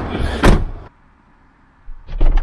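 A car door slams shut about half a second in, one heavy thump after some handling rustle.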